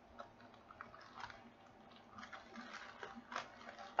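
Faint crinkling and small clicks of plastic packaging being handled as a diamond painting kit is opened, with a few slightly louder crackles about a second in and again past three seconds.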